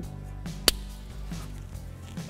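Background music, with one sharp click under a second in as a 7440 wedge bulb is pushed into its plastic socket.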